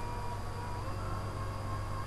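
Steady low hum with an even hiss: background noise of the recording.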